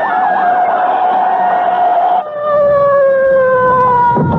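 Police car siren sound effect. A few quick rising and falling sweeps, then a held wail that slowly falls in pitch, stepping down to a lower tone about two seconds in.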